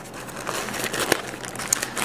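Crinkling and rustling of a plastic bag and nylon backpack fabric as a small plastic-wrapped kit is pulled out of the pack by hand, with scattered light clicks.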